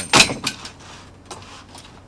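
An aluminum hydraulic trench shore clattering and scraping against the trench sheeting as it is swung into place: one short, loud clatter just after the start, then faint handling noise.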